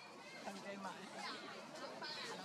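Indistinct human voices chattering in the background, with no clear words.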